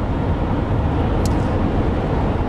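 Steady road and engine rumble heard from inside the cabin of a moving car.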